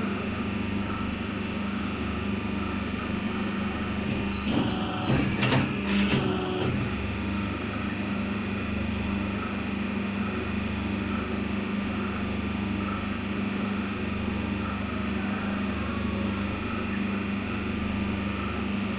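Double-die paper plate making machine running with a steady motor hum, with a short run of knocks and clatter about four to six seconds in as the plates are worked.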